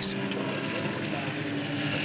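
Nissan GT-R GT3 racing car's engine running at high revs as it passes at speed, a steady engine note that holds nearly the same pitch.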